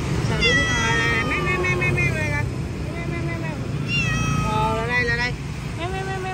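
Long-haired calico Persian cat meowing several times: a long drawn-out meow falling in pitch, then shorter ones, over a steady low traffic hum.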